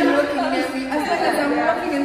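Women's voices talking over each other, loud and lively.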